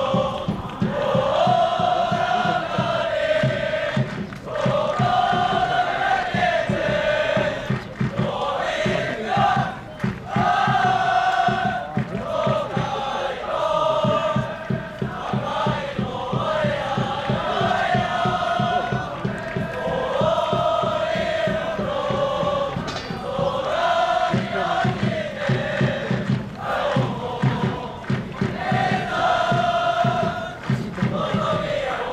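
A large group of young men in a team circle, chanting a song in unison with long held notes.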